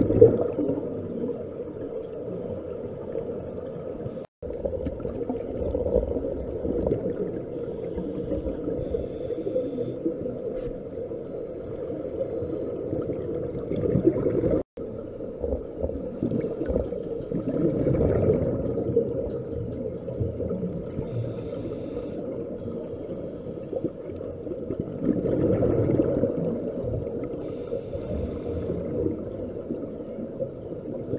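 Underwater sound of scuba diving: regulator breathing, with exhaled bubbles gurgling past every several seconds over a steady low hum. The sound drops out suddenly for an instant twice.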